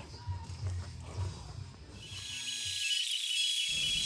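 A low hum, then from about two seconds in a steady hiss with thin high whining tones: a Bridgeport milling machine running with an air-mist coolant sprayer on the cut.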